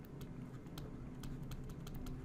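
Faint, irregular clicks and taps of a stylus on a pen tablet during handwriting, over a low steady hum.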